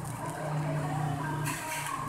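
Clear plastic bag crinkling as it is emptied and squeezed out over a plate of food, with a steady low hum for about a second in the middle.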